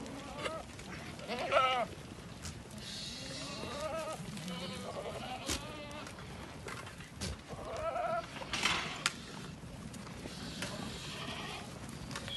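Aardi goats bleating, several wavering calls from the herd, the loudest about a second and a half in and another near the three-quarter mark, with a few short clicks in between.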